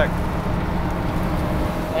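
Steady engine and road noise inside the cabin of a moving storm-chase vehicle: a constant low rumble with a faint hum.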